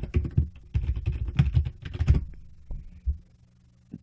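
Computer keyboard typing: a quick, irregular run of muffled key clicks for about two seconds, thinning to a few single key presses after that, over a faint steady low hum.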